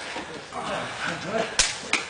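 Two sharp smacks in quick succession about a second and a half in, the second lighter, over faint voices in the room.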